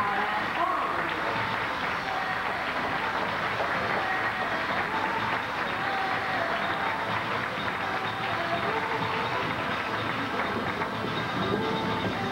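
A crowd clapping steadily, with music playing underneath.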